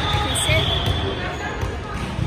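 A ball bouncing on a hardwood gym floor in a large, echoing gym, with faint voices in the background.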